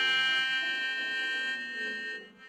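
Melodica holding one long high note, its reedy tone rich in overtones, with softer lower notes shifting beneath it.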